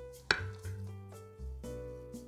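A table knife cuts down through a stuffed pepper and strikes the ceramic plate once with a sharp clink just after the start, over background music.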